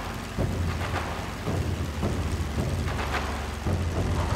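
Low, steady drone of propeller aircraft engines with a crackly hiss over it, its tone shifting a few times.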